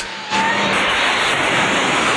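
Movie sound effect of the DeLorean time machine speeding off and vanishing through time: a sudden loud rushing blast about a third of a second in that carries on as a steady, dense rush of noise.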